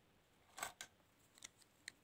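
A handful of faint, short clicks and taps in near quiet, from a hand and pen coming down onto a sheet of paper.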